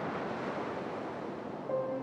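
Steady rushing noise of surf washing on a shore. Near the end, a held music note comes in.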